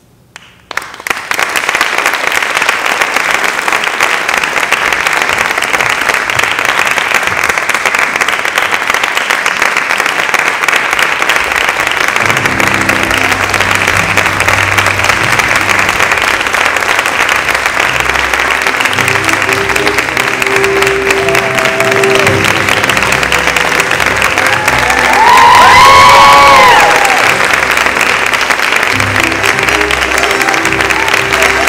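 Audience applauding, the clapping starting suddenly about a second in and running on steadily. From about twelve seconds in, music plays under the applause, and a loud whooping cheer rises over it a few seconds before the end.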